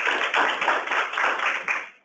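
Audience applauding with dense, rapid clapping that dies away just before the end.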